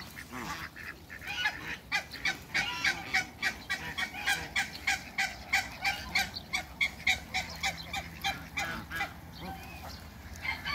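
Domestic geese honking in a rapid series of short calls, about three a second. The calls start about a second in and ease off near the end.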